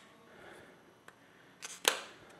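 Canon EOS 7D body being handled and its rubber connector cover on the side pried open: a faint rustle, then two sharp clicks near the end, the second louder.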